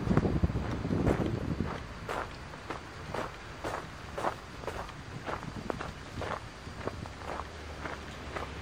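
Footsteps walking at a steady pace on a dirt path strewn with fallen leaves, about two steps a second. A low rumble runs through the first second or so.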